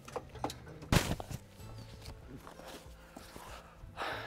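A few light knocks and then one sharp knock about a second in: a dog jumping out of an aluminium truck dog box onto its metal floor and down. Soft background music underneath.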